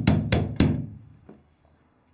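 A man banging on a closed front door with the flat of his hand: three quick bangs, then a fainter one about a second later.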